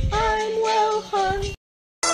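A person singing a few held, wavering notes in a high voice, cut off abruptly about one and a half seconds in, with dead silence after the edit.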